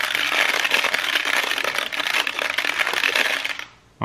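Hypnogizmo spinning bead toy being turned by hand, its beads clicking rapidly and continuously as they fall down the strings inside the clear drum. The clatter fades away shortly before the end.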